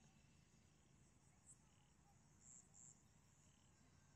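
Near silence with faint, high-pitched insect chirping; three short, slightly louder chirps come in the second half.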